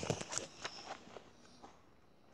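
Pages of a small paperback picture book being flipped through quickly, a run of sharp paper flaps and rustles in the first second that thins out to a few light handling sounds as the book settles open.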